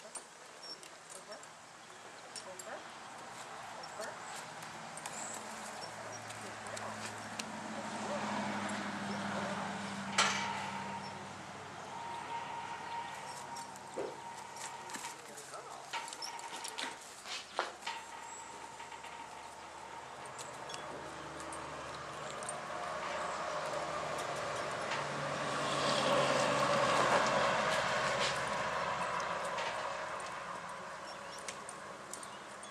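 Saddled horse walking on a sand arena, its hoofbeats soft. A few sharp knocks come in the middle, and a louder noise swells and fades near the end.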